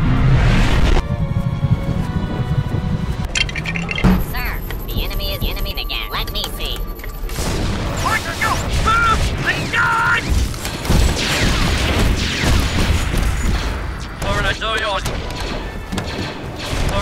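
Animated battle-scene soundtrack: booms at the start and again about four seconds in, with shots and loud battle noise over music, and short vocal sounds near the end.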